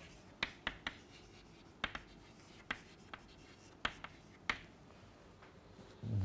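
Chalk on a blackboard while writing: a string of short, separate taps and scrapes, about ten strokes spread unevenly over the few seconds.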